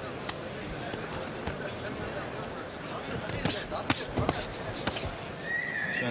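Boxing-glove punches landing as sharp thuds, a cluster of them between about three and five seconds in, over a steady arena crowd hubbub.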